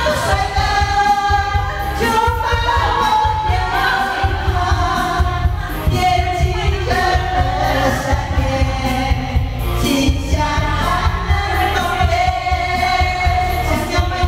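Two women singing a pop song into karaoke microphones over an amplified backing track, continuous and fairly loud.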